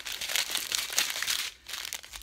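Small plastic bags of diamond painting drills crinkling as they are handled, a dense run of crackles that eases off about one and a half seconds in.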